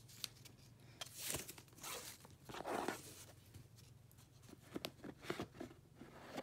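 Ribbon and a paper camellia being pulled off a cardboard gift box: a few soft rustling swishes, then a cluster of light clicks and taps as the box is handled near the end.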